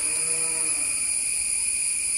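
A steady high-pitched insect drone, with a short pitched call lasting under a second at the start that falls slightly in pitch.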